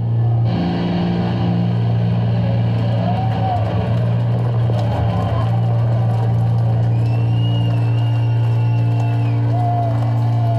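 Live metal band's electric guitars and bass holding one sustained low chord through stage amplifiers, with a thin high tone for about two seconds near the end and a few voices calling out over it.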